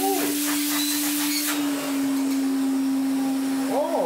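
A Hoover Constellation 867A canister vacuum cleaner's motor running steadily with its hose fitted: a constant hum over a rush of air, its note dropping slightly about one and a half seconds in.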